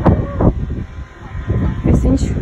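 Wind buffeting a phone's microphone in uneven low rumbles, with a sharp click at the start and short snatches of voices.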